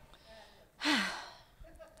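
A woman's sigh into a handheld microphone: one breathy exhale about a second in, opening with a short falling vocal tone.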